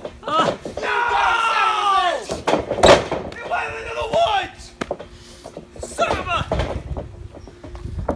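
Men's voices shouting and laughing, with a long falling yell near the start. A single sharp knock sounds about three seconds in.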